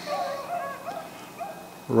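Beagles baying faintly in the distance, several short calls in a row, as the pack runs a rabbit track.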